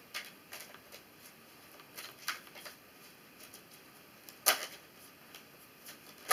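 A tarot deck shuffled by hand: scattered soft clicks and rustles of cards sliding over one another, with one sharper snap about four and a half seconds in.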